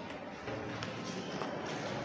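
Flashcards being handled and swapped, a soft rustle with a couple of faint taps.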